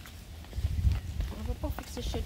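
Footsteps on asphalt over a low rumble of wind on the microphone, with a faint, brief child's voice about one and a half seconds in.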